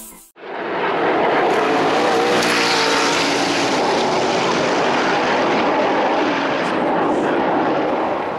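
McLaren P1's twin-turbo V8 hybrid powertrain under hard acceleration: a loud, sustained engine note that swells in within the first second and holds steady with a slight waver.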